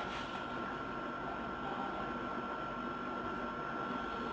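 Quiet room tone: a steady hiss with a thin, steady high-pitched whine, like a fan or electrical noise.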